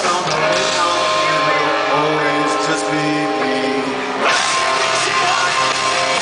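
A live rock band playing loudly with a singer, in a concert recording. About four seconds in, a sharp hit marks the start of a new section.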